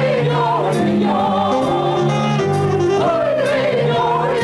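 Music with singing: a voice sings a wavering melody over steady held low notes that step from one pitch to the next.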